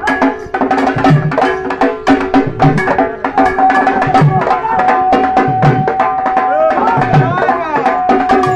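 Folk music led by drums: fast hand-drum strokes over a deep drum beat about every second and a half, with a melody line that holds one long note through the second half.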